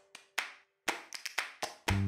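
A run of about eight sharp clicks or taps at uneven intervals, under a faint held musical note that stops about halfway through.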